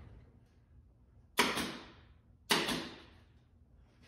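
Two sharp impacts about a second apart, each a quick double crack that dies away within half a second.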